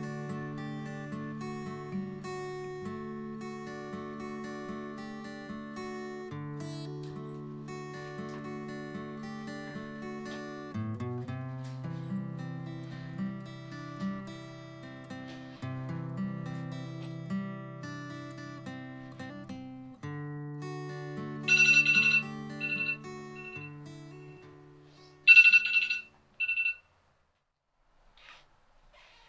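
Gentle guitar music plays steadily. About two-thirds of the way through, a mobile phone ringtone cuts across it in two loud bursts of short, high beeps, and the music fades out near the end.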